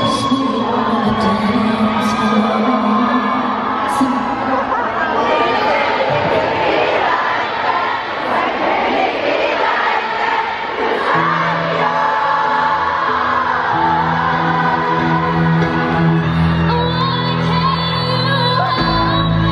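Arena concert crowd cheering and screaming, with singing mixed in over music from the PA. About eleven seconds in, a steady low held chord of music comes in under the crowd.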